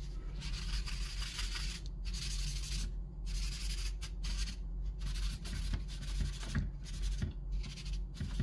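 A folded paper towel rubbing back and forth over willow charcoal on sketchbook paper, blending the tone. It makes a dry scrubbing noise in repeated strokes with brief pauses between them, over a faint steady low hum.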